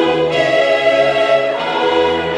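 Slow church music: a choir singing long, held notes over instrumental accompaniment.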